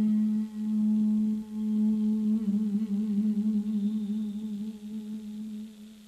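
A single held low musical note with overtones, like a hummed or droning pad, wavering slightly in pitch and fading out near the end.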